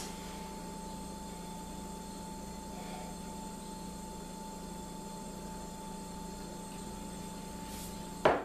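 Steady room tone: an even hiss with a constant thin high tone and a low hum, with no distinct events.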